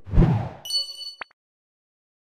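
Logo sound effect: a swoosh with a low hit, then a bright metallic ding that rings for about half a second and cuts off with a click.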